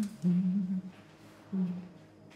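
A woman humming to herself in short, low held notes, one after another with brief pauses, the last starting about a second and a half in.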